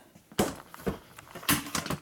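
Footsteps on a shop floor: three or four sharp knocks, roughly half a second apart.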